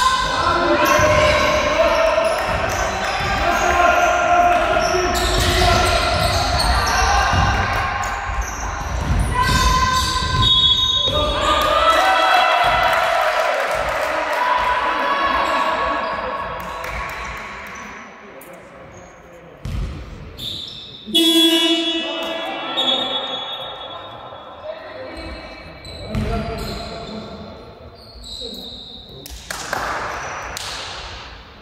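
A basketball game in a large hall: the ball bouncing on the wooden court and players' shoes moving, under many voices of players and coaches calling out, all reverberating in the hall. The busy play sound fills the first dozen seconds, then thins to scattered voices and bounces, with a sudden loud sound about two-thirds of the way in.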